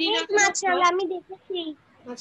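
A child's voice chanting or sing-song reciting a line for just over a second, followed by two short voice sounds, heard through a video-call connection.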